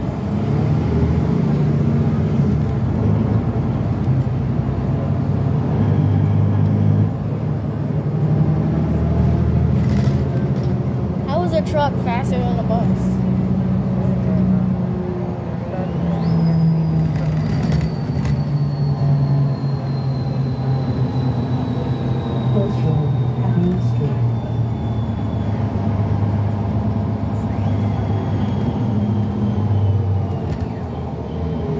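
Inside a New Flyer Xcelsior XD40 diesel transit bus under way: engine and drivetrain drone, its pitch shifting as the bus speeds up and slows, with road noise. A faint high whine slowly falls in pitch through the middle.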